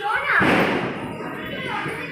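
People talking in a crowd, with a loud thud about half a second in.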